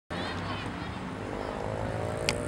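Scattered voices of children and spectators around the pitch, a few high calls early on, over a steady low rumble.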